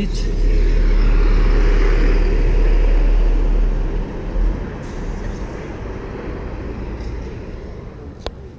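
Road traffic on the street below, heard through an open window: a heavy vehicle's low engine rumble swells about half a second in, holds for a few seconds and fades after about four and a half seconds.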